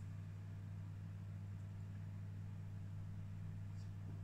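A steady low hum, with a faint tick near the end.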